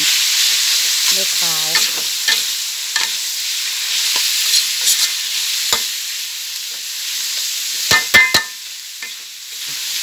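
Pork sizzling as it is stir-fried in a large metal wok, a metal spatula scraping and clicking against the pan throughout. Near the end the spatula strikes the wok three times in quick succession with sharp clanks.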